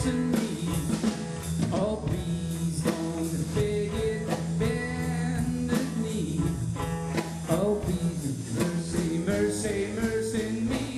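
Live blues band playing: a harmonica solo with bending, sliding notes over electric guitar, bass and drum kit.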